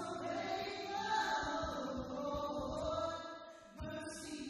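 A woman singing a slow Christian worship song over musical accompaniment, holding long notes, with a short drop in level near the end.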